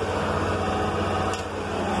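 A steady low hum with a fine, even pulse, typical of an engine idling.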